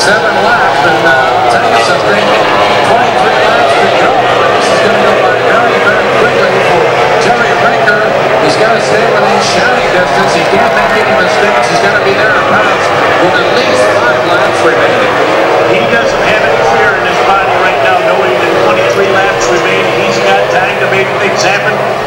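Racing outboard engine of a Formula 1 tunnel-hull powerboat running at high revs, its pitch wavering up and down continuously.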